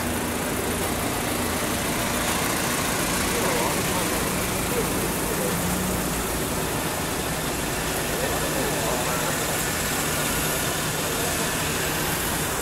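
Car engine idling with a steady low hum under a constant background noise, with faint voices.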